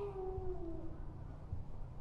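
A faint held tone, sinking slightly in pitch and fading out about a second in, over low steady background hum.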